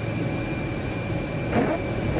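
Steady engine and tyre noise heard inside a car's cabin while driving on a wet road, with a faint, thin, steady whine above it.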